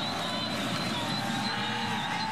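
Steady din of a large stadium crowd at a college football game, heard through the TV broadcast feed.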